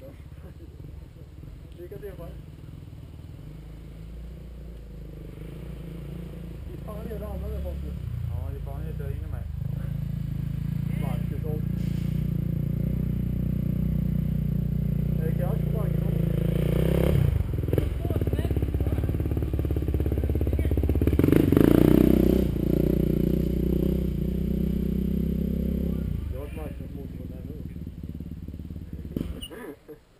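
Motocross bike engines idling and running at steady speed, growing louder through the middle and easing off a few seconds before the end.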